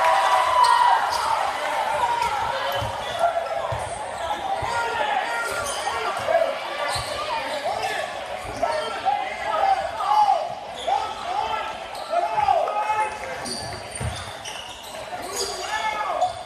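Basketball game in a school gym: spectators shouting and chattering, louder in the first second, with a basketball bouncing on the hardwood floor and players' footfalls underneath.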